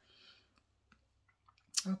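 A woman's faint breath and a few small mouth clicks between sentences, then a short sharp breath just before her voice starts again near the end.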